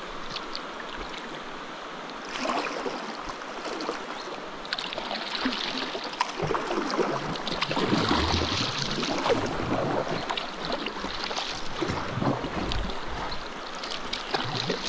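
River rapid water rushing and splashing around a kayak hull, with the splash of paddle strokes. The water gets louder and busier from about six seconds in.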